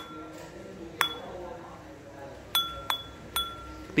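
Glazed Bát Tràng ceramic bowl tapped with a hard object: one tap about a second in, then three quick taps near the end, each leaving a clear, high ringing tone that lingers. The ring is very clear ('rất là thanh'), offered as a mark of good porcelain.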